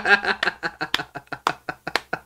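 A man laughing hard: a fast run of short laughs, about six a second, growing fainter and fading out near the end.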